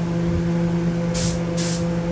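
Air spray gun spraying polyurethane finish, heard as two short hissing bursts a little over a second in, over a steady, loud multi-tone hum.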